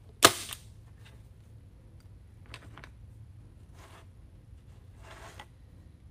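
A staple gun fires once with a sharp snap, driving a staple into the corner of a cardboard sign. Three quieter, brief rustles follow as the sign and pipe cleaners are shifted on the work mat.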